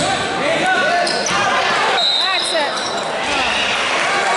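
Basketball dribbled on a hardwood gym floor, with sneakers squeaking as players move, in a large echoing gym.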